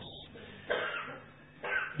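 A person coughing: two short, rough coughs about a second apart.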